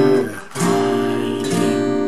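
Steel-string acoustic guitar strumming chords: one chord dies away, then a new chord is strummed about half a second in and left ringing.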